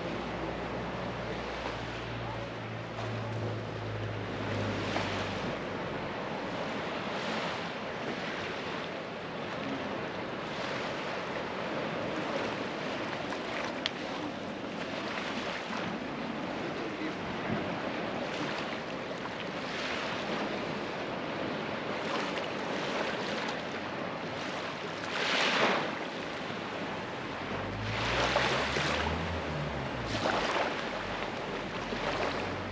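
Small waves washing on a sandy beach, with wind buffeting the microphone. A low engine hum is heard for the first few seconds, and another engine hum rises in pitch near the end.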